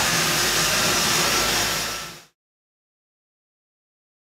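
Steady workshop background noise, a hiss with a low hum from machinery or ventilation, that fades out a little after two seconds into silence.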